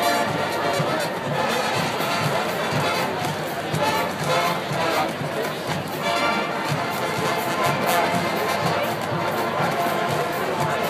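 A university marching band playing a brass-heavy tune, with crowd noise and chatter from the stands around the microphone.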